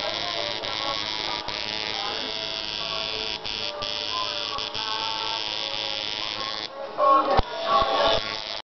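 Coil tattoo machine buzzing steadily as it needles skin, with a few very brief breaks, over background music. The buzz stops near the end, followed by a thump and louder noises.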